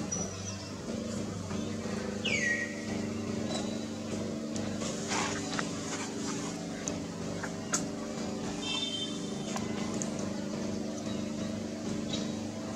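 Steady low hum of an idling motor vehicle engine, with a short high call sliding down in pitch about two seconds in and a brief high chirp about nine seconds in.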